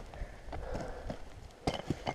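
Light scuffing and rustling on loose rock and dry pine needles, with two sharp knocks near the end, as the stopped dirt-bike rider shifts footing beside the bike.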